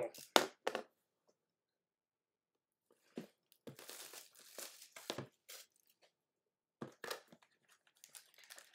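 A sealed box of trading cards being torn open by hand: crinkling and tearing of its wrapping in a run of bursts from about three seconds in, then a few lighter crinkles near the end.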